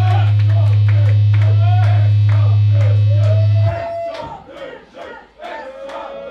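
A loud, low held note from the band's amplified instruments rings steadily under the audience's shouting, then cuts off abruptly a little past halfway. After that the crowd goes on shouting and cheering.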